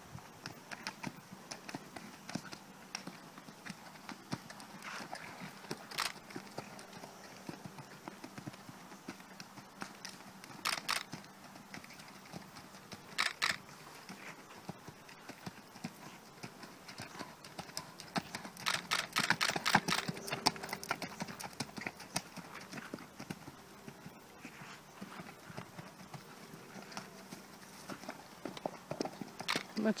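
Horse's hooves beating on a sand arena at a trot, a steady run of soft thuds, with a few louder rushes of noise, the longest about two-thirds of the way through.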